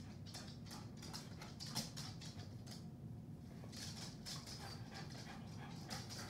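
Outdoor ambience in light rain: a steady low rumble under irregular groups of short, high-pitched ticks, each group lasting about a second.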